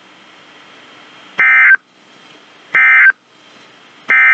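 Two short, loud, buzzy data bursts about a second and a half apart, the SAME digital end-of-message code that closes a NOAA Weather Radio warning broadcast, played through a Midland weather alert radio's speaker, with faint static hiss between them.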